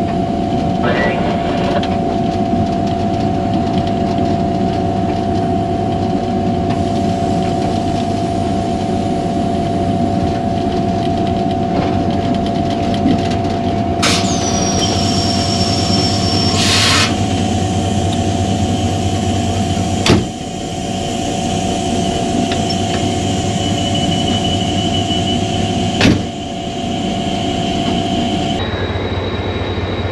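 HGMU-30R diesel-electric locomotive running steadily with a humming, tonal engine drone, heard from the locomotive as it rolls slowly through a station. Two short bursts of hissing come about halfway through, and two sharp clicks follow; the sound changes suddenly near the end.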